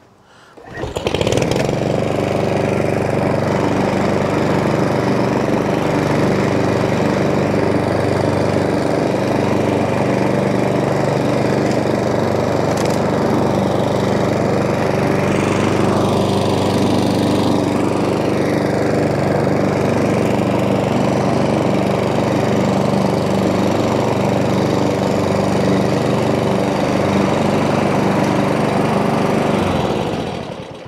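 Hyundai HYM510SPE self-propelled petrol lawn mower running steadily while it drives across the lawn cutting grass. The engine note comes in about a second in and holds even throughout.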